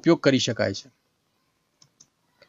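A man's voice speaking for about a second, then a pause broken by two faint clicks near the end.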